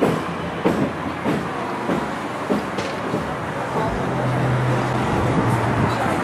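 City street traffic noise from passing cars, a steady wash of sound, with a low engine hum coming in about two-thirds of the way through.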